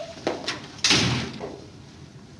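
Office door shut: a couple of small latch clicks, then the door closes with a sharp bang a little under a second in that dies away quickly.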